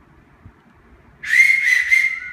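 A person whistling loud and high in approval, one held whistle that starts a little over a second in, once the singing has stopped.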